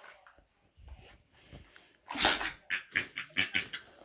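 A girl's breathy, mostly unvoiced laughter in quick bursts, starting about halfway through after a near-quiet first half.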